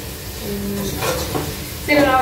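Oil sizzling as biryani masala fries in a large enamelled pot, with a metal spatula scraping and stirring a few strokes about a second in.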